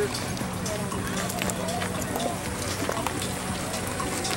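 Indistinct chatter of a group of people outdoors, with scattered light clicks and knocks over a steady low hum.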